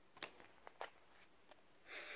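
Near silence with a few faint clicks in the first second and a soft rustle near the end: an oracle card being drawn from the deck and handled.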